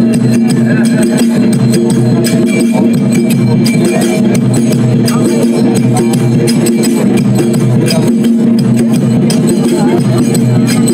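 Loud live folk bhajan music: a steady low drone under regular percussive strokes from a metal plate struck with a stick, with voices mixed in.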